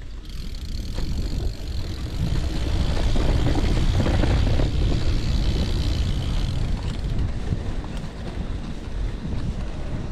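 Wind buffeting a chest-mounted GoPro's microphone while a gravel bike rolls along a dirt and gravel track, mixed with tyre rumble. The noise grows louder over the first three seconds, then holds steady.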